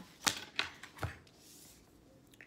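A tarot deck being shuffled by hand, with three sharp card snaps in the first second or so.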